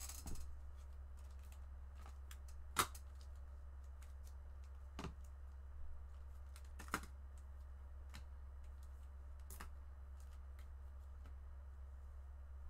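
Scattered light clicks and taps of typing on a computer keyboard, with a few sharper, louder clicks, over a steady low hum.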